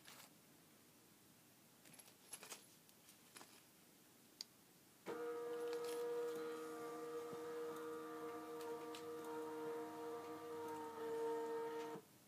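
Somfy battery-operated R-28 tubular shade motor starting about five seconds in and running with a steady, even-pitched hum, after a few faint clicks.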